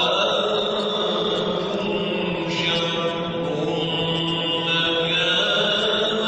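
A man's voice reciting the Quran in a slow, melodic chant, holding long drawn-out notes whose melody shifts twice.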